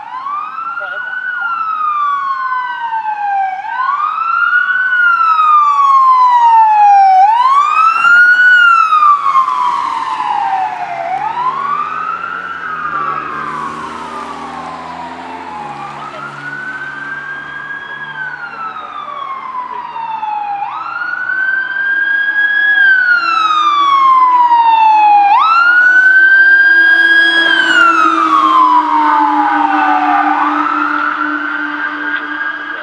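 Fire apparatus sirens in wail mode, each cycle rising quickly and falling slowly, about one every four seconds. The sound swells louder twice as the responding vehicles come close. A truck engine is heard under the sirens in the middle, and the pumper fire engine's siren is loud as it passes near the end.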